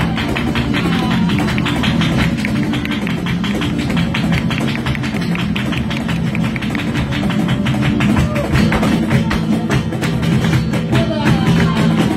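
Live flamenco: Spanish guitar strumming under fast, even handclaps (palmas) and the dancer's heel-and-toe footwork (zapateado) on the wooden stage. A voice calls out briefly near the end.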